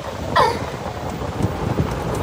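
Wind buffeting the phone's microphone and low rumble from a golf cart driving along. A short high vocal cry comes about half a second in.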